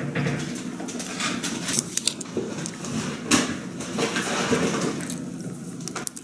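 A person chewing a mouthful of stale, hard-doughed jam doughnut close to the microphone, with small handling clicks as the doughnut goes down on a ceramic plate.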